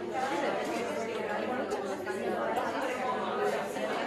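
Overlapping chatter of many voices at once: students talking among themselves in small groups in a large classroom.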